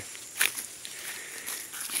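Footsteps rustling through dry leaf litter on the forest floor, with one sharper crunch about half a second in.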